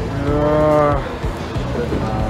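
A man's long, drawn-out groan of frustration at running late, rising and then falling in pitch for about a second, over background music.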